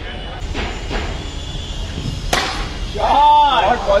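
A single sharp crack about two seconds in, followed near the end by a loud drawn-out voice calling out.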